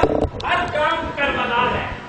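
A man's voice speaking, with a short sharp knock in the first half second.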